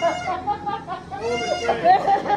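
Several people shrieking and shouting excitedly over one another, with two long high-pitched shrieks, one at the start and another just past a second in.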